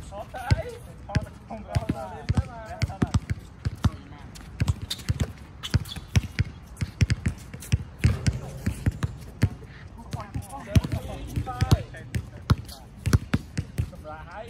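Basketballs bouncing on an outdoor hard court: a string of sharp, irregular thuds, several a second at times, with players' voices in between.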